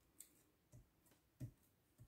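Near silence with a light click, then two soft thumps, the second a little louder: hands pressing a glued paper panel down onto a card on a cutting mat.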